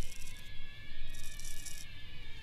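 Dark, droning film score of sustained tones over a deep low rumble, with a short high hiss about a second in.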